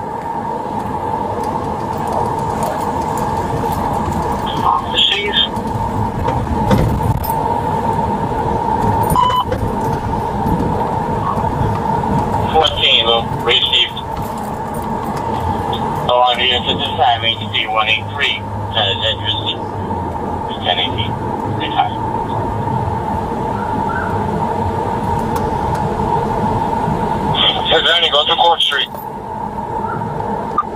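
Police patrol car driving, its engine and road noise heard from inside the cabin as a steady rumble, with muffled, indistinct speech coming and going over it.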